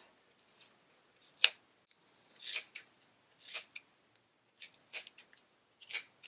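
Small sharp scissors snipping through white acrylic yarn wound on a plastic pom-pom maker, cutting along its centre groove. A series of short, irregular snips, about one a second, the sharpest about a second and a half in.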